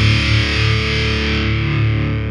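Heavy metal recording ending on a sustained, heavily distorted electric guitar chord ringing out, its upper tones fading near the end.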